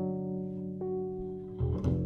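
Double bass and a Yamaha Reface CP keyboard playing together: a low bass note rings under sustained keyboard notes, a new keyboard note comes in about a second in, and a fresh plucked bass note sounds near the end. The keyboard adds a simple interval above the bass line, used as interval and intonation practice.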